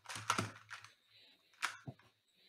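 A few sharp clicks and taps in two short clusters, the first right at the start and the second near the end, over a faint low hum.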